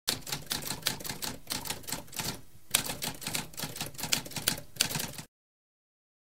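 Typewriter keys typing in a rapid run of clacking keystrokes, with a short pause about halfway through, stopping about five seconds in.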